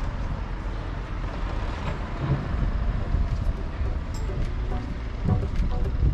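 Wind buffeting the camera microphone: a heavy, gusting low rumble with a steady hiss above it.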